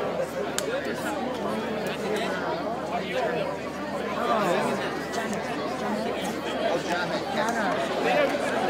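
Audience chatter: many voices talking over one another, with no music playing.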